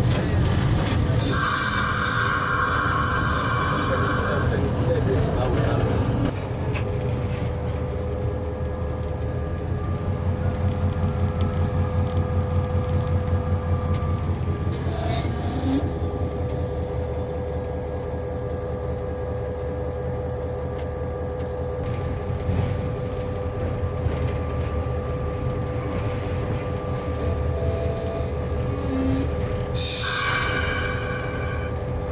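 Diesel locomotive engine running under way, heard inside the driver's cab as a steady heavy low rumble that throbs evenly for a stretch in the middle, with a thin steady whine. Near the start, a loud high-pitched sound lasts about three seconds.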